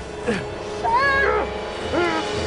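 A person's short, high-pitched cries, rising and falling in pitch, the strongest about a second in, over background music.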